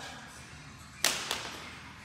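A PVC pipe dropped onto the floor: one sharp hit about a second in and a smaller bounce just after it.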